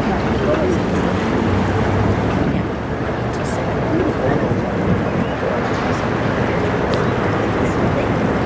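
Steady low rumble of a chemical tanker passing close by, mixed with wind buffeting the microphone. Indistinct voices can be heard in the background.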